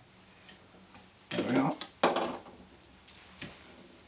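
Small metallic clicks and ticks of a fly-tying whip-finish tool being worked around the thread at the hook eye. Two short bursts of a man's voice come in the middle.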